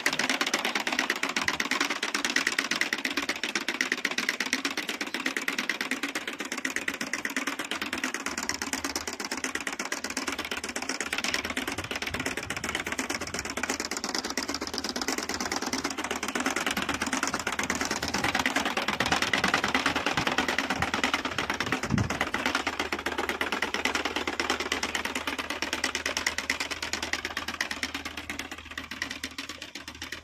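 Hand-pushed rotary jab planter sowing groundnut, its spiked wheel and seed mechanism rattling with rapid clicking as it rolls over ploughed soil, fading near the end as it moves away. A low engine hum runs underneath from about eight seconds in.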